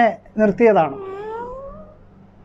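A short falling voice sound, then a high, drawn-out cat-like cry that rises slowly in pitch for about a second.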